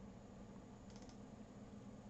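Near silence: faint room hum with a few faint computer mouse clicks about a second in.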